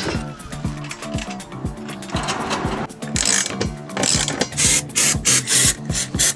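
A socket ratchet clicking in quick runs, as nuts are run onto long bolts, over background music with a steady beat.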